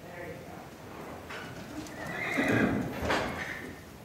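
A horse whinnies about two seconds in, a call lasting roughly a second and a half, the loudest sound here, over the hoofbeats of a horse moving on arena footing.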